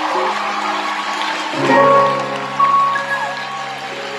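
Live band music with long held chords, a new, deeper chord coming in about a second and a half in.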